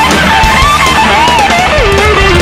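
Live rock band playing: an electric guitar played flat across the lap takes a solo of bent notes that glide up and down, falling in pitch near the end, over bass guitar and drums.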